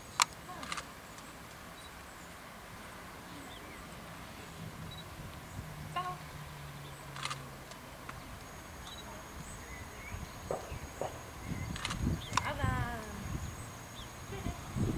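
Quiet open-air background with faint voices, a sharp click just after the start and a smaller one shortly after. Voices grow more frequent and louder in the last few seconds.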